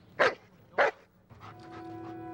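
A German shepherd police dog barks twice, about half a second apart. Music begins near the end.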